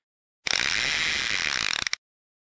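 Old film projector rattle sound effect: a loud, dense mechanical clatter that starts about half a second in and cuts off abruptly just before the end.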